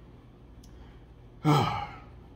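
A man's short sigh about one and a half seconds in: a breathy voiced exhale that falls in pitch.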